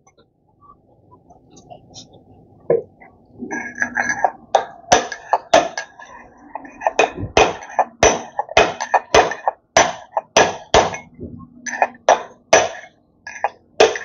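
Metal-on-metal taps and clinks with a ringing tone, irregular, about two to three a second, starting about three seconds in: metal tools and parts being worked during scooter repair.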